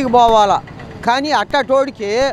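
Only speech: a man talking in short phrases into a handheld microphone.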